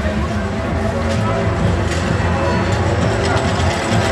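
Funfair din: crowd voices and fairground music, with mechanical clatter and clicks from a children's roller coaster train running on its steel track.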